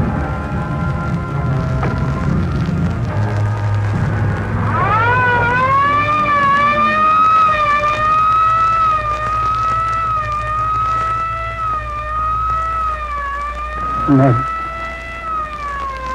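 Dramatic film score, then about five seconds in a police siren starts, rising sharply and then wailing slowly up and down in pitch over a low steady drone.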